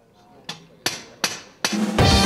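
Four sharp percussive hits, about 0.4 s apart, starting about half a second in. Each decays quickly, and the sound swells up just before music begins.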